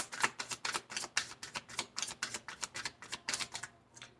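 A deck of tarot cards being shuffled by hand: a quick, even run of papery clicks, about six a second, as cards slip from one hand onto the other. It stops shortly before the end.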